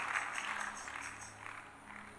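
Congregation clapping that fades away over the first second and a half, leaving a faint steady low tone underneath.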